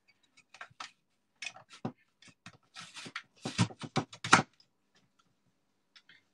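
Push-down plastic vegetable dicer being pressed onto onion chunks: a run of sharp clicks and crunches as the lid drives the onion through the grid blade, loudest just before it stops about four and a half seconds in.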